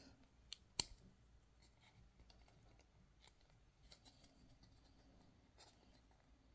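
Near silence with a handful of faint clicks from hands working string through the hole of a small painted wooden disc, the sharpest just under a second in.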